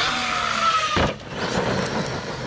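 Brushless electric motor of an Arrma Kraton V2 RC truck whining and slowly falling in pitch for about a second, then a sharp knock, followed by rough tyre-and-gravel noise as it drives.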